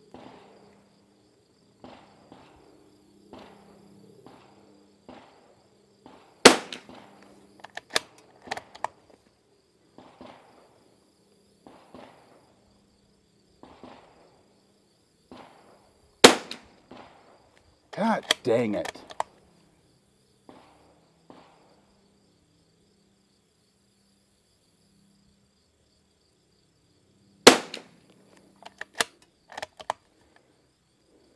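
Christensen Arms Ranger 22 bolt-action .22 rimfire rifle firing RWS R50 ammunition: three single shots about ten seconds apart, each sharp crack followed by a few light clicks of the bolt being cycled. A longer burst of noise comes about two seconds after the second shot, over a thin steady insect buzz.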